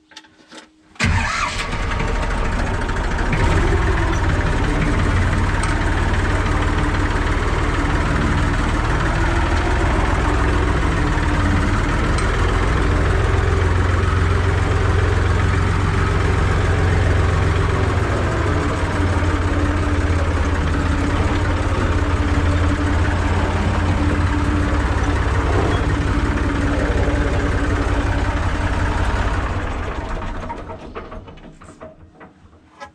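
IMT 539 tractor's three-cylinder diesel engine cranked and catching about a second in, then running steadily, heard from inside the cab. The sound begins to die away at the very end.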